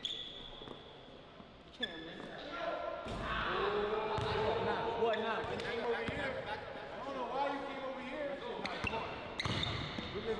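A basketball being dribbled on a hardwood gym floor, bouncing several times, while people talk.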